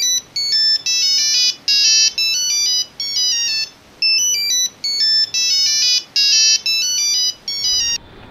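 Mobile phone ringtone: a short melody of high electronic notes, played through twice, then cut off suddenly.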